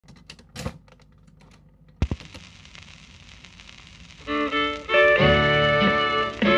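Record changer on a vintage radiogram cycling: clicks and a clatter as the 78 rpm record drops, then a thud about two seconds in as the pickup lands, followed by steady shellac surface hiss. About four seconds in, the record's country-band intro starts playing through the radiogram's built-in speaker and quickly grows loud.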